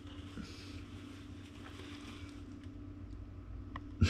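Quiet steady hum, with faint light rustling of a cloth bag being shaken out and a small click near the end.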